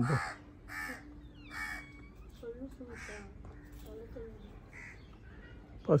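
Crows cawing, a series of short separate caws about one a second.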